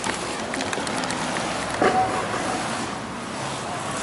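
Outdoor vehicle and traffic noise, with a few light clicks and a brief squeak about two seconds in.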